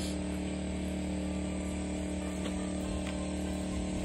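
Portable generator running steadily, a constant low hum.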